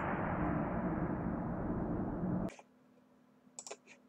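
Soundtrack of a four-times slowed-down slow-motion longsword sparring clip playing through the screen share: a steady rushing noise that starts suddenly and cuts off after about two and a half seconds as the clip ends. A few faint clicks follow near the end.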